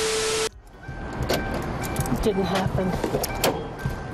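A half-second burst of TV static hiss with a steady tone, cutting off abruptly. Then outdoor field sound of people talking and moving around a car, with a faint steady high tone.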